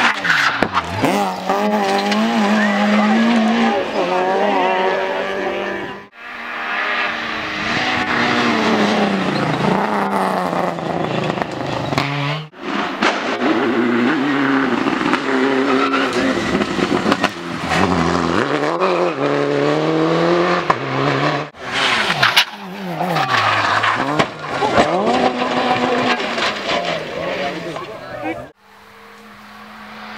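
Rally cars being driven hard on a tarmac stage, the engines revving up and dropping back again and again through gear changes and braking. Several separate passes follow one another, each breaking off abruptly.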